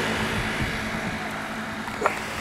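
A motor vehicle's engine hum fading away as it drives off, a steady low drone under road noise that grows gradually quieter.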